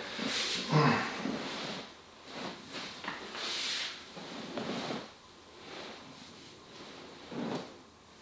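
Soft, irregular rustling and brushing as a leg is lifted and bent on a padded treatment bench, with clothing and the bench cover shifting under the movement.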